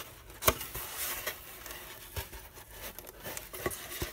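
Foam core board panels handled and folded up along scored lines, with soft rustling, one sharp tap about half a second in and a few softer knocks after.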